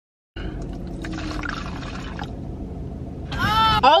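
Liquid poured from a small bottle into a cup, a steady rushing pour that stops about two seconds in, over a low hum inside a car; near the end a woman's voice rises in a high exclamation.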